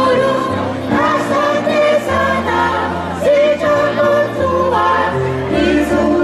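Music: a choir singing a slow piece over held low accompanying notes.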